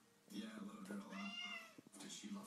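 Domestic cat giving one drawn-out meow that rises and falls in pitch, starting about half a second in.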